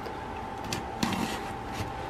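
Soft handling noises: a cardboard shipping box being shifted and turned on a tabletop, a few brief scrapes and taps, over a faint steady hum.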